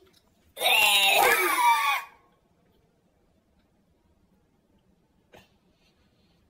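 A boy's loud vocal cry, a wordless yell lasting about a second and a half, starting just after the start. Then near silence, with one faint click near the end.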